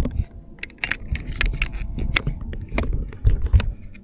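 Plastic cup-holder mounting bracket and its quick-release locking screw being handled and turned, giving a run of small sharp clicks and rattles over a low rumble.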